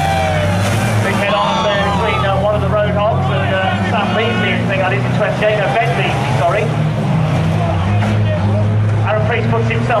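Several banger racing cars' engines running and revving together around the track, under a public-address commentator's voice.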